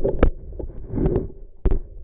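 Camera handling noise: muffled knocks and thumps over a low rumble, with two sharp knocks, one just after the start and one past the middle.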